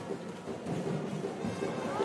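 Basketball arena ambience: crowd noise with music playing over the hall.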